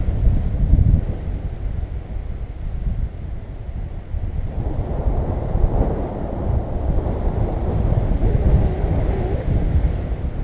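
Wind from the paraglider's flight buffeting the action camera's microphone: a steady rush of noise, heaviest in the low end, that rises and falls in uneven gusts.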